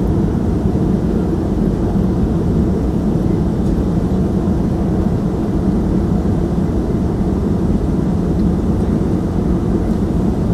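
Steady low rumble of jet airliner cabin noise, engine and airflow heard from a window seat during the climb after takeoff.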